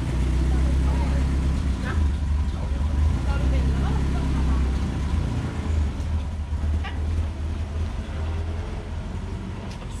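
A motor vehicle's engine running steadily with a low hum, strongest in the first half and fading over the last few seconds. Faint voices murmur underneath.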